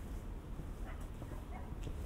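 A couple of faint, brief animal calls over a low, steady outdoor rumble.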